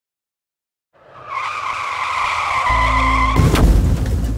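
Car tyres screeching in a long skid, starting about a second in, ending in a loud crash shortly before the end, with a low steady drone coming in just before the impact.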